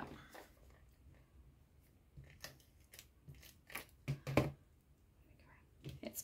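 Ribbon being peeled up from adhesive on a cardstock panel and handled on a desk: a few short crisp clicks and rustles, the loudest a little over four seconds in.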